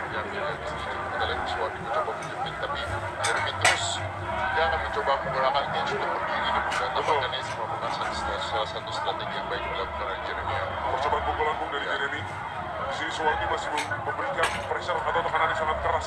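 Arena ambience at a live MMA fight: a steady crowd rumble with shouted voices, and a few sharp knocks.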